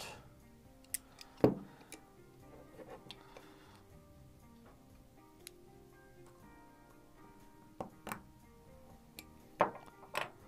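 Quiet background music with scattered sharp clicks and knocks of small hand drivers on the brushless motor's pinion gear as it is loosened. The loudest knock comes about one and a half seconds in, with a pair of clicks near the end.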